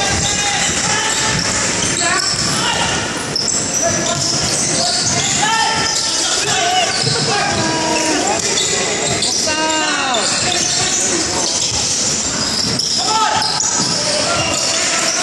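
Basketball being dribbled on a hardwood gym floor during live play, with players' and spectators' voices echoing through a large hall.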